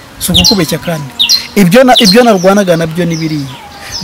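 A bird chirping in short, quick, falling high notes, mostly in the first second, under a man speaking Kinyarwanda.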